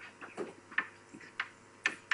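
A lecturer writing on a board: a few faint, irregular taps and short scrapes as the strokes are made, about four or five in two seconds.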